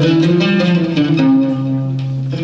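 Live band music: plucked lute-family strings carry the melody over double bass.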